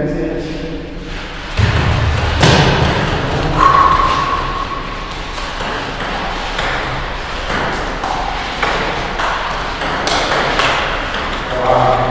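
Table tennis ball clicking back and forth between the paddles and the table in a rally, a long run of quick sharp ticks.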